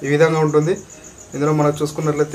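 A man speaking in two drawn-out phrases with a short pause between them, under a faint, rapidly pulsing high-pitched chirp.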